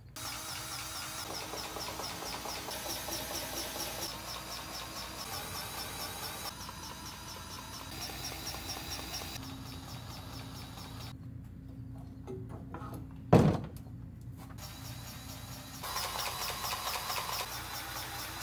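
Cordless grease gun motor running in stretches, a steady fast-ticking whir, across several short cut-together takes, with one loud knock about 13 seconds in.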